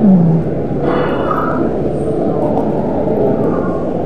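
Steady low rumble of a busy airport terminal corridor, with brief snatches of distant voices.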